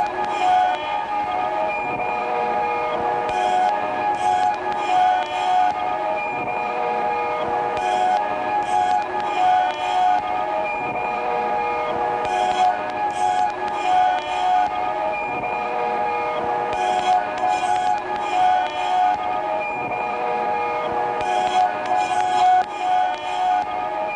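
Electroacoustic sound-art piece: a dense drone of many sustained metallic-sounding tones, with a cluster of high hissing strokes that repeats about every four and a half seconds, the cycle of a tape loop.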